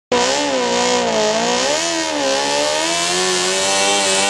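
Mini pulling tractor's engine running hard at high revs while dragging a pulling sled. Its pitch wavers up and down, dipping and climbing again a little before two seconds in, then settles slightly lower.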